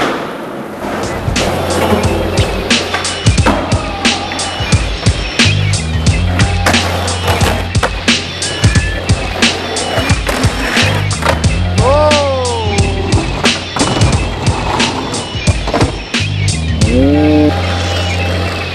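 Skateboards on concrete: wheels rolling and the sharp clacks of boards popping and landing, over music with a steady bass beat.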